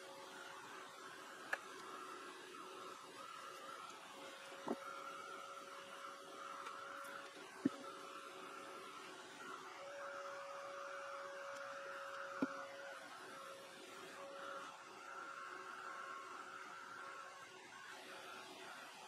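Small hand-held hair dryer running steadily, with a faint hum, as paint is dried on a journal page. Four sharp clicks come a few seconds apart.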